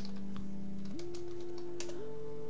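Computer keyboard typing: a few scattered key clicks as a web search is entered, over a steady held tone that steps up in pitch about halfway through.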